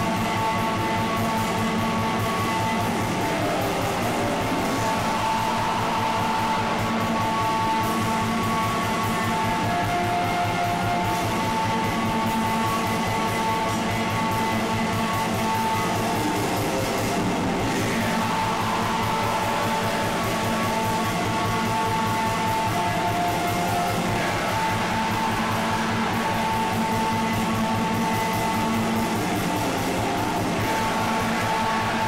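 Raw black metal: distorted guitars and fast drumming in a dense, unbroken wall of sound at a steady loudness.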